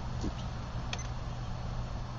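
A steady low rumble of wind on the microphone and the burning stove, with a single sharp click and short high beep about a second in as the button on a digital thermometer-timer is pressed to start the timing.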